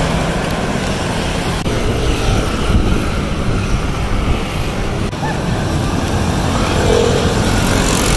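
Street traffic at a busy intersection: a steady mix of scooters and cars passing close by, with a box truck driving past at the start.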